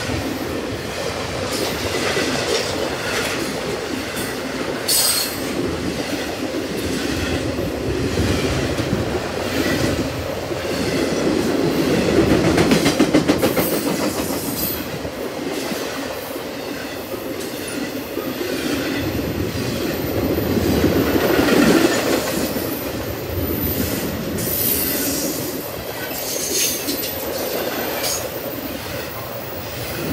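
Intermodal freight train's well cars loaded with containers rolling past at close range: a continuous rumble of steel wheels on rail with rhythmic clacking and brief high wheel squeals. It swells louder twice as the cars go by.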